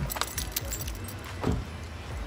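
Light jangling clinks of small metal items, like a set of keys being handled, with a brief low sound about one and a half seconds in.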